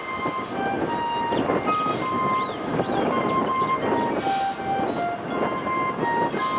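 High school marching band playing its field show: held brass chords, with a melody of long notes moving from pitch to pitch above them.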